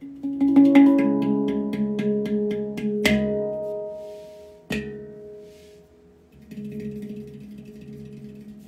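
Handpan played by hand: a quick run of struck steel notes, about four a second, in the first three seconds, then two sharp hits about three and five seconds in that ring on and die away, with softer notes near the end.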